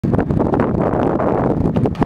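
Wind buffeting the camcorder microphone: a loud, steady rumbling noise.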